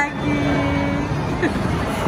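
Steady background hubbub of a busy indoor ice rink, with one short held tone in the first second.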